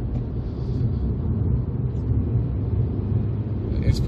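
In-cabin sound of a 2009 Mazda RX-8 R3 cruising at a steady pace: the twin-rotor Wankel rotary engine holds an even low drone under steady tyre and road rumble.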